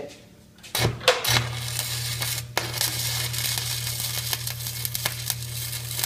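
Stick-welding (shielded metal arc) electrode striking an arc on steel plate: a couple of sharp pops just under a second in as the rod catches, then the arc burns steadily with a dense crackle over a low hum for about five seconds, laying a tack weld.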